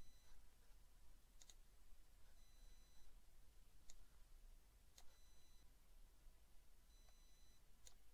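Near silence, broken by a few faint computer mouse clicks spread through the stretch, with a faint high tone heard twice.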